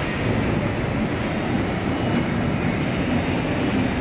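Hydraulic CNC press brake running, with a steady low hum and rumble from its hydraulic drive as it works through repeated strokes.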